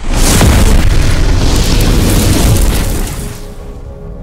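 Cinematic explosion sound effect: a sudden, loud deep boom that rumbles for about three seconds, then fades out.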